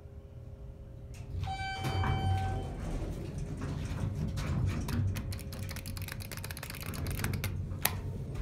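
Montgomery hydraulic elevator car with a faint steady hum, then a single electronic tone lasting about a second, about a second and a half in. A louder low rumble with rapid clicking and rattling follows, and one sharp click comes near the end.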